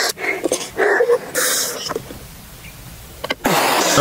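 A mouthful of drink spat out in a spit-take, a loud sputtering spray that starts about three and a half seconds in. Before it, a few short sounds and a brief hiss.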